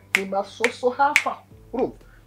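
Three sharp finger snaps about half a second apart, made by a man gesturing as he talks excitedly.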